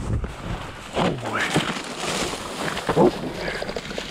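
Dry cattails and grass rustling as a hunter pushes through them, with wind on the microphone, broken by three short voice-like calls about a second in, half a second later and near three seconds in, the last the loudest.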